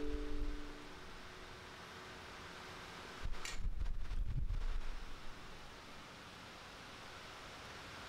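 Low handling rumbles and one faint click about three and a half seconds in, as a greased steering head bearing is set down into its race in a motorcycle frame's steering head.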